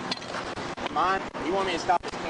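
A person's voice, in two short stretches of words about a second in and near the end, over steady outdoor background noise.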